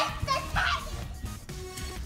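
A young child's short, high-pitched vocal exclamation during play, about half a second in, with quieter play sounds and music underneath.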